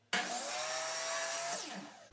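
Electric miter saw running with a steady motor whine while its blade cuts through a piece of wooden molding, then spinning down in a falling whine near the end as the trigger is released.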